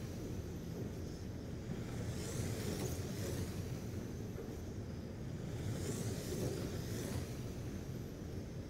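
Radio-controlled Traxxas Slash short-course trucks racing on an oval track. Their motors give a whine that swells and fades as the pack passes, twice, a few seconds apart, over a steady low rumble.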